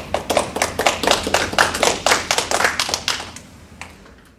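A small audience applauding with distinct, uneven claps that thin out and fade in the last second.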